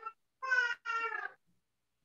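A cat meowing three times in quick succession, each meow short and high.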